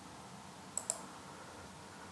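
Two quick, sharp clicks of a computer mouse button just under a second in, over faint steady hiss.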